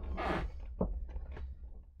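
Faint handling sounds from fitting a small retaining pin into the door gas strut's end fitting: a short hiss early on, then a few light clicks, over a low steady hum.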